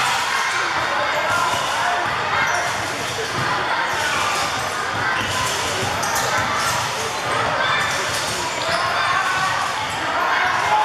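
A basketball being dribbled on a hardwood court, under a steady hubbub of children's voices from the crowd in the stands.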